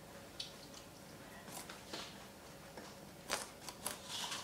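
A rabbit biting and chewing crisp vegetable stalks: faint, irregular crunches and snips, with the loudest cluster near the end.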